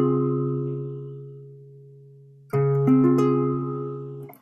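Acoustic guitar chord, a C-sharp major 7, ringing and slowly fading. About two and a half seconds in, a C7 chord is struck, with one more note joining just after; it rings until it is cut short near the end. The C-sharp major 7 stands in for G half-diminished in a minor two-five-one in F minor.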